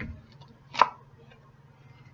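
A single sharp tap or snap a little under a second in, from an oracle card being pulled from the spread and handled.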